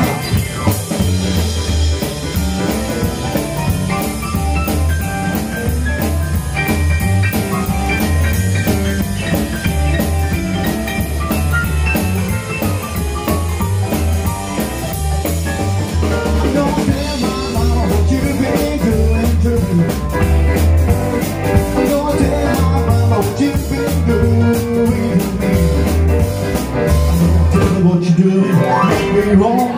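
Live rockabilly band playing an instrumental break: piano-sound keyboard, hollow-body electric guitar, drum kit and upright bass, with a steady pulsing bass line and regular drum beat.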